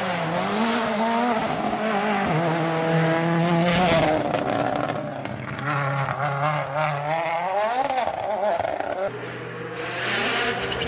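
A World Rally Car's turbocharged four-cylinder engine driven hard through a bend, its pitch climbing and dropping again and again with the gear changes, with a burst of sharp crackles about four seconds in. A second rally car's engine comes in lower and steadier near the end.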